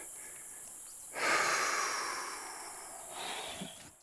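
A man's heavy, out-of-breath exhale: a long breathy sigh starting about a second in and fading away, then a shorter breath with a brief grunt near the end, over a steady high hiss.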